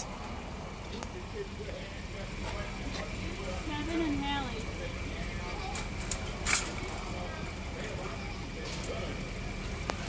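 Outdoor background noise with faint, distant voices, a faint steady high tone, and a sharp click about six and a half seconds in.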